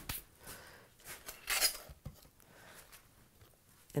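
Quiet kitchen handling noises: a light click at the start, then a couple of soft swishes from hands brushed together to shake off crumbs.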